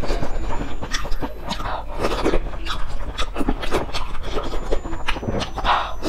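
Close-miked eating sounds: wet chewing and slurping of noodles in broth, with many irregular small clicks and smacks of the mouth.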